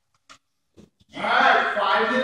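A child's voice in a long, drawn-out vocal sound that starts about a second in and carries on unbroken, after two faint taps.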